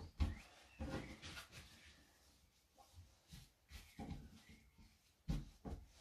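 Faint rustling of cotton fabric and a few soft taps of hands pressing it flat on a table while an embroidered neckline piece is positioned and pinned, irregularly spaced with short silences between.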